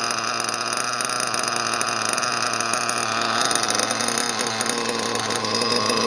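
LRP ZR.32X nitro glow engine idling steadily on its first run with a new, unadjusted carburettor, heard through its open exhaust tube.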